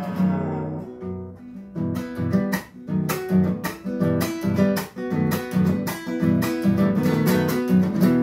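Nylon-string classical guitar playing an instrumental passage of a chacarera: a few ringing notes, then rhythmic strummed chords with sharp percussive strokes from about two seconds in.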